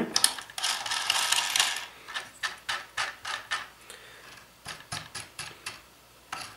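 Steel M8 nuts being spun by hand along threaded rods: a short scraping run, then a series of small metallic clicks and rattles, about three or four a second, as the nuts turn on the threads.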